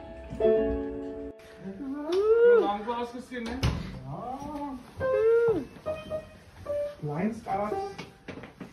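Piano chords held for about a second near the start, then people's voices with the piano sounding now and then beneath them.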